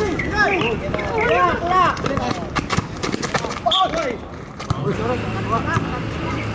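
Several voices shouting and calling out during a basketball game, with a run of short knocks about halfway through from the ball bouncing on the court.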